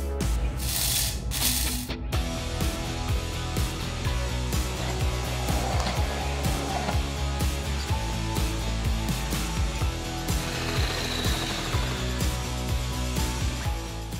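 Background music over a bamix stick blender running, with a rapid rattle of clicks as hard food such as coffee beans strikes its spinning blades. A louder burst of grinding noise comes about a second in.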